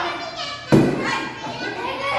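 A stick striking a piñata once: a single sharp thump about three-quarters of a second in, amid children's shouts and voices.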